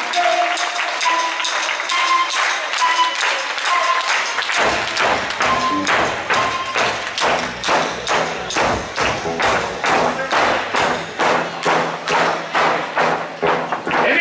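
Live folk band playing dance music. A single melody instrument plays alone at first; about four and a half seconds in, the full band joins with a bass line and a steady beat of about two to three strokes a second.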